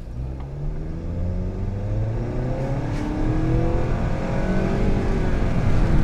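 2020 Nissan Sentra's 2.0-litre inline-four with CVT accelerating, heard from inside the cabin: an engine drone that climbs gradually in pitch and loudness, with road noise underneath.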